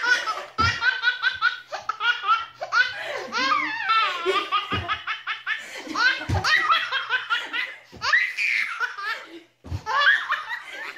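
A toddler laughing hard: long runs of quick, high-pitched belly laughs, broken by a few short pauses for breath.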